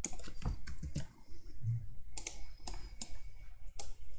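Irregular clicks of a computer keyboard and mouse, as shortcuts are pressed to select and duplicate a set of nodes.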